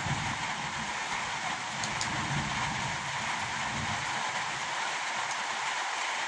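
Steady rain falling, with a low rumble of distant thunder that fades out about four seconds in.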